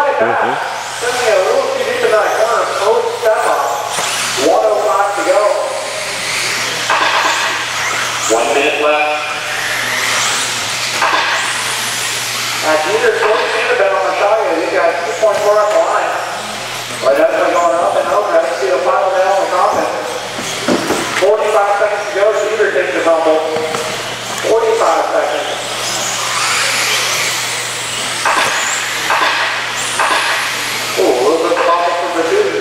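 Electric 4WD RC buggies racing on an indoor dirt track, a high hissing whine from motors and tyres that swells and fades as they pass. A man's voice calls the race, indistinct, over it, with a steady low hum.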